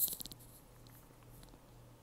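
Fingers scratching through hair and scalp close to the microphone: a brief, rapid rasping at the start, followed by a faint steady hum.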